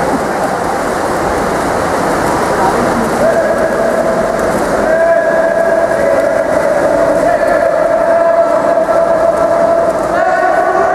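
Echoing noise of an indoor pool during a water polo game: continuous splashing from swimming players mixed with voices. A steady pitched tone joins about three seconds in and holds on.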